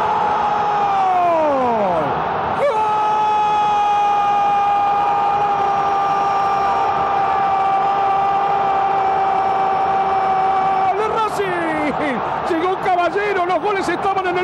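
A football commentator's drawn-out goal cry, "gol" held on one high note, celebrating a goal just scored. The first breath falls away in pitch about two seconds in, and a second long held note lasts about eight seconds before breaking into fast excited shouting. Crowd noise runs underneath.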